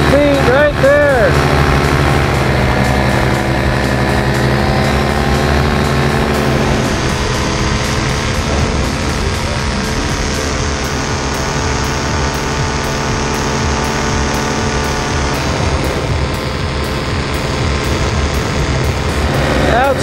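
Blackhawk two-stroke paramotor engine and propeller running steadily under climbing power, with the engine note holding nearly constant.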